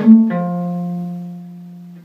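Gypsy jazz acoustic guitar, Selmer-style with a small oval soundhole, picked single notes: a quick note or two, then one long note left to ring and fade for about two seconds before it is damped.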